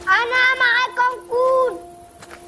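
A child's high-pitched voice shouting a short line, the last syllable drawn out, over a steady music drone.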